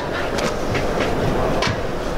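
Footsteps climbing a travel trailer's entry steps and onto its floor: a few separate knocks over steady background noise.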